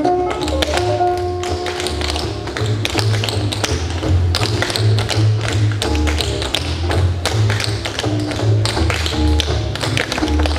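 Several tap dancers' shoes tapping in quick rhythmic clusters, over music with a pulsing bass line.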